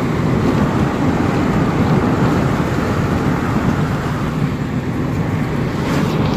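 Steady loud rumble of a car driving, heard from inside the cabin: engine, tyre and wind noise, strongest in the low end.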